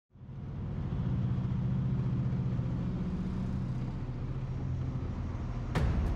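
Large diesel engine of a mining haul truck running steadily, fading in at the start. A sudden loud burst of noise comes near the end.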